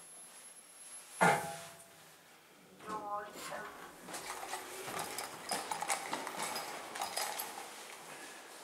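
Kone EcoDisc traction lift arriving at its floor: a short ringing tone about a second in, then the stainless-steel car doors sliding open with light clicks and rattles. A brief voice is heard near the middle.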